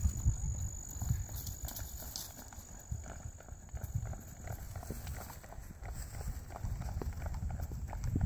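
A thoroughbred horse's hoofbeats on grass as it is ridden past: a run of soft, uneven thuds.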